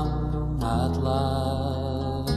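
Music from a 1970s Christian folk-group recording: sustained chords over a held bass note, moving to a new chord under a second in, with no sung words.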